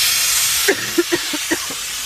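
Steady hiss of rain, with a few short, muffled laughs about halfway through.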